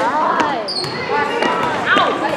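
A basketball bouncing on a hardwood gym floor amid voices calling out from players and spectators. A short high squeak sounds about two-thirds of a second in.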